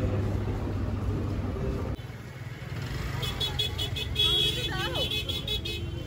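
Busy market street: background voices and traffic rumble, with a shrill horn tooting several times in the second half.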